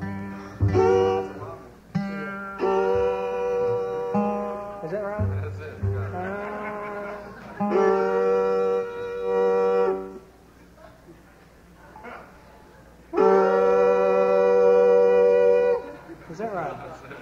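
Acoustic string instruments being tuned on stage: a series of long held notes, some bending in pitch, with a short pause about ten seconds in.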